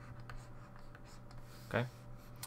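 Faint scratching of a stylus writing on a tablet in short strokes, over a faint steady low hum.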